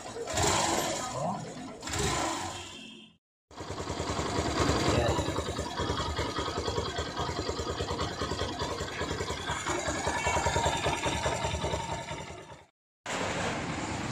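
Yamaha SZ single-cylinder engine idling with a rapid, loud clatter from the clutch housing, the sign of a defective clutch housing and clutch damper. A voice is heard over the running engine in the first few seconds.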